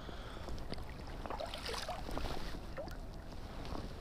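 Shallow creek water running under a steady low rumble, with a few small splashes and scuffs as a hooked coho salmon is drawn in and grabbed by hand.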